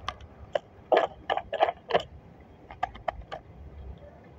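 Light clicks and taps of cards being handled, with long fingernails on card stock: about six in the first two seconds, then a quicker run of four near the end.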